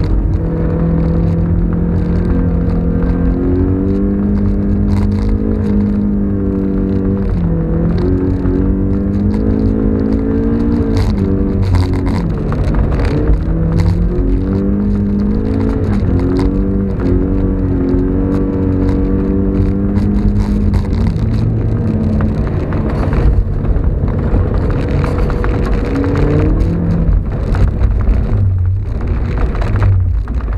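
Mazda MX-5's four-cylinder engine heard from inside the cabin while driving, its note climbing and then dropping several times as it revs up and changes gear, over a steady low road rumble.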